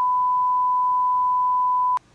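A censor bleep: one steady, pure high tone masking swearing in the film dialogue, cutting off suddenly at the end.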